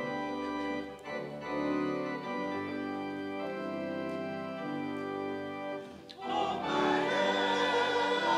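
Church organ playing a hymn introduction in held chords. About six seconds in, after a brief pause, the choir and congregation come in singing the hymn over the organ.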